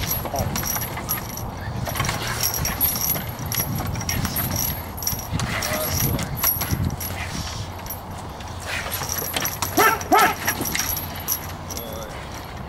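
Dog on a tie-out chain gripping and tugging a bite sleeve: the chain jangles and rattles and there is continuous scuffling on the wooden table. Two short pitched calls come about ten seconds in.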